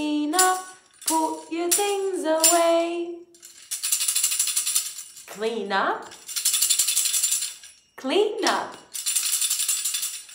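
A woman singing a children's clean-up song, then a hand-held star-shaped tambourine shaken in three bursts of jingling of about a second and a half each, with short sung notes between them.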